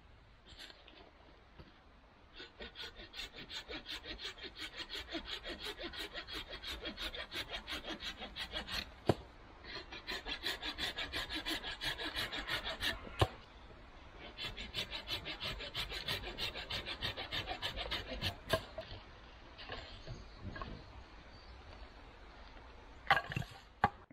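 Husqvarna folding pruning saw cutting through wood by hand, with rapid back-and-forth rasping strokes in three runs separated by short pauses. The coarse teeth make an aggressive cut, and there are a few sharp knocks along the way.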